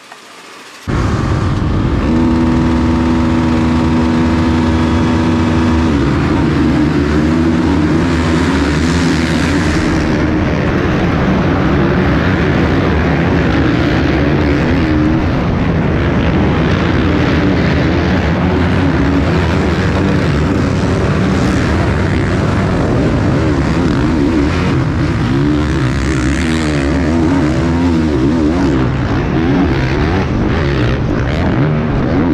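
A pack of motocross bikes racing, heard from a helmet camera in the middle of the field: many engines at high revs. About a second in the sound starts suddenly and holds an even pitch for a few seconds, then the engines rise and fall as the bikes accelerate and shift.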